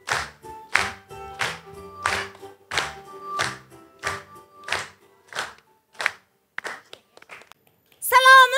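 Upbeat music with a studio audience clapping along in time, about one and a half claps a second. It fades out near the end.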